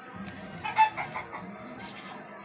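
A quick run of five or six short, pitched animal calls about a second in, the second one the loudest.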